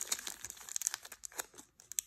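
Clear plastic wrapping on a pack of baseball cards crinkling in irregular crackles as fingers peel it open.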